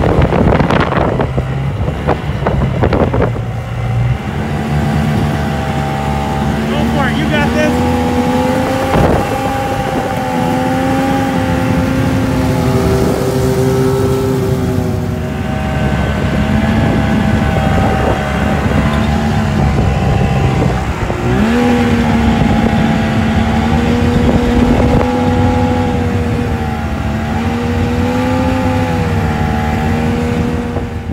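Snowmobile engine running at a steady cruising speed, heard from aboard the sled, its pitch wavering slightly with the throttle. About two-thirds of the way through, the pitch drops briefly and climbs back.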